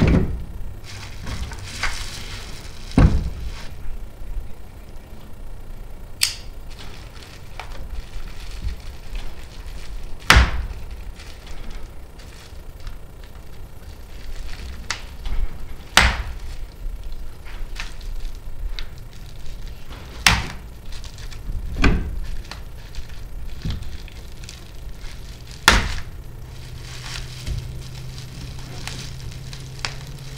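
Metal bike-rack bars and fittings knocking and clanking on a pickup tailgate as they are handled and unwrapped, about a dozen sharp knocks spread through, with rustling of the plastic packing wrap.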